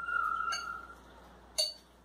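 A steady tone that lasts about a second and fades, then a single sharp clink of glass, as a vessel knocks against the glass mixing bowl of semolina batter.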